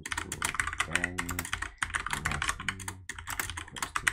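Rapid typing on a computer keyboard: a fast, continuous run of key clicks as a line of code is entered.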